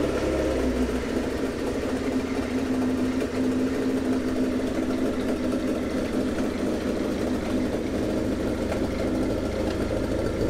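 Kawasaki GT750's air-cooled inline-four engine idling steadily, freshly started on its first run after the valve clearances were reset.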